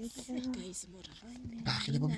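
Newborn baby grunting and fussing: a run of short, strained vocal sounds, louder and breathier near the end.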